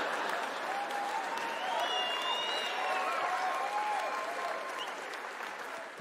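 Theatre audience applauding after a punchline, with a few voices cheering over the clapping. The applause slowly fades toward the end.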